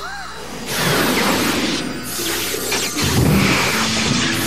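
Cartoon sound effects of magical energy crackling like lightning, with a deep rumble about three seconds in, over dramatic background music.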